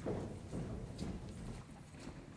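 Faint, uneven footsteps on a stage platform, about two knocks a second.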